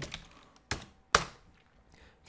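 Typing on a computer keyboard: a few light keystrokes, then two sharper single key clicks, about half a second apart, a little under a second in.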